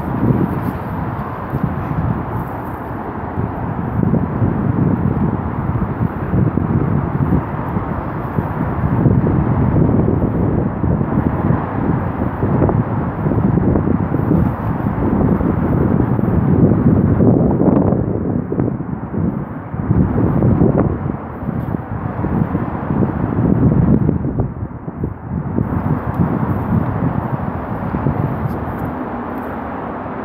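Wind buffeting the microphone: a loud, low, gusting rush that swells and eases, with brief lulls about two thirds of the way through.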